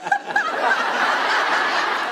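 A crowd laughing: a studio audience and the cast laughing together at a flubbed take, with a woman's laugh standing out in the first half-second over the steady laughter of many people.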